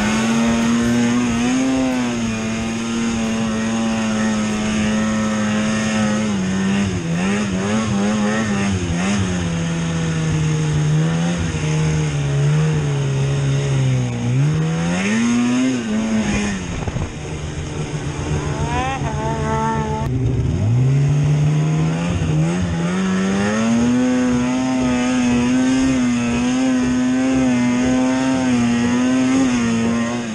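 Snowmobile engine running under throttle, its pitch rising and falling as the rider speeds up and eases off, with a few brief drops in revs about halfway through and again around two-thirds of the way in.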